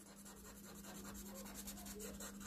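Felt-tip pen scribbling quickly back and forth on paper, colouring in a block with a rapid run of faint scratchy strokes.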